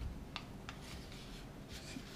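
A sheet of origami paper being handled and opened out by hand: faint rustling with two short crisp crinkles in the first second.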